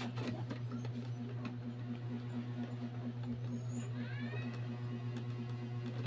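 Steady low hum with faint clicks of wire being handled as the neutral wires are twisted together into a splice by hand.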